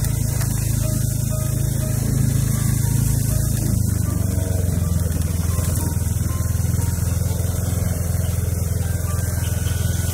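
Small motorbike engine running steadily while riding along a bumpy dirt track, with wind noise on the microphone. The engine note shifts about four seconds in.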